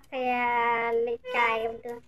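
A person's voice drawn out in a sing-song way: one long syllable held at a steady pitch for about a second, then a shorter one.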